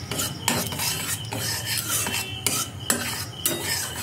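A metal spoon stirring and scraping in an aluminium kadai on the gas flame, in quick strokes about two a second. The pan holds a thin layer of sugar melting into caramel that is meant to turn red.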